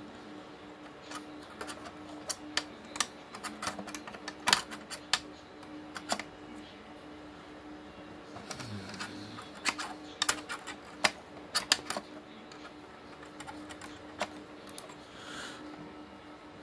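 Irregular sharp clicks and taps of fingers handling the plastic and metal parts of an open HP BL460c G6 blade server while seating a small board and connector, over a steady low hum.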